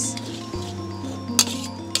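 Background music with sustained notes, over which a metal spatula clinks against a steel wok as fried rice is stir-fried. There are two sharp clinks in the second half.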